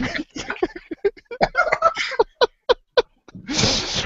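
Men laughing in a run of short voiced bursts that thin out into a few separate ha's, then a loud breathy burst of air near the end.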